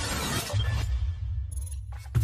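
Electronic intro sound design: a hissing, full-range noise texture that gives way about half a second in to a deep bass rumble, with a brief dropout just before the end.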